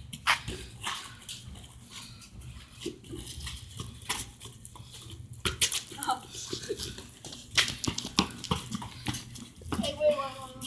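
Sneakers scuffing and running on concrete and gravelly dirt as two kids fight over a soccer ball, with scattered sharp knocks from the ball being kicked, and brief children's voices.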